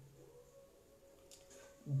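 Faint room tone with a steady low hum in a pause between spoken words.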